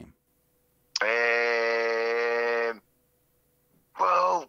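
A man's drawn-out "errr" of hesitation, held at one steady pitch for nearly two seconds, starting about a second in.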